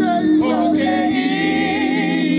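A solo voice singing a slow gospel worship song, holding notes with a wide vibrato over steady low sustained backing tones.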